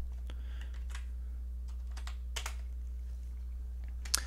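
Computer keyboard keystrokes: about half a dozen separate key clicks in the first two and a half seconds, over a steady low electrical hum.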